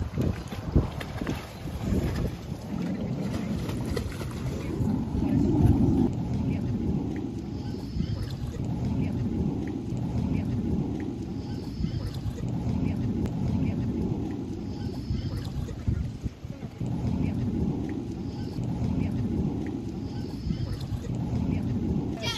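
Wind buffeting the microphone in gusts, a low rumble that swells and eases every second or two, with faint splashing of pool water every few seconds.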